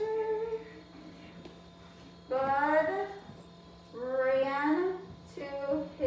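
Young children's voices reading aloud together in a slow, drawn-out, sing-song chorus, in four separate phrases.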